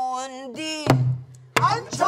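A woman's pansori singing voice holds a long note, then a buk barrel drum is struck twice, each stroke followed by a low booming ring. Singing starts again near the end.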